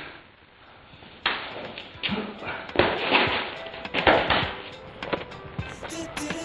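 Several rough rustling and scuffing noises in a row, then music with a repeating beat starting near the end.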